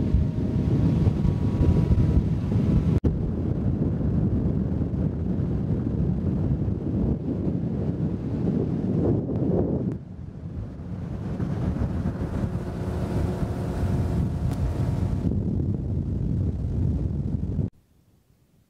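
Heavy wind rumble on the microphone from a motorboat running across open river water, with the boat's motor faintly droning beneath it. The sound cuts off suddenly near the end.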